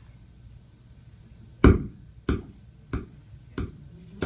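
Four sharp percussive hits, evenly spaced about two-thirds of a second apart and starting over a second in, the first the loudest: a count-in at the start of a recording played over the PA.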